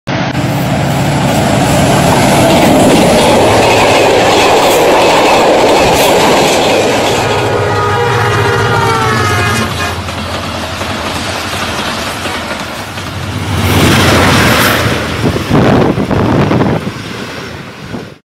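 Passenger trains passing close by, with the steady clatter of coaches over the rails. From about eight to ten seconds in, a locomotive horn sounds and its pitch falls slightly as it passes. The noise swells again near the end.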